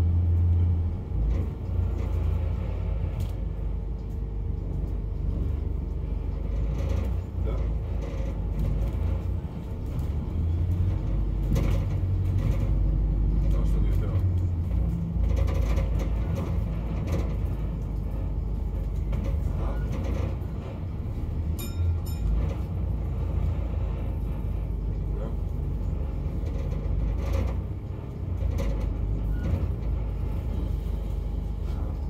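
Steady low engine and road rumble inside a moving London double-decker bus, heard from the upper deck, with occasional short clicks and knocks.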